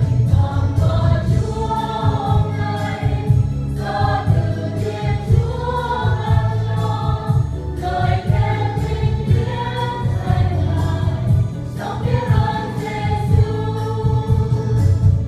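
Mixed choir of women and men singing a Vietnamese hymn together, over an instrumental accompaniment with a steady bass and a regular beat.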